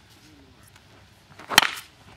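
A baseball bat striking a pitched ball in batting practice: one sharp crack with a brief ring, about one and a half seconds in.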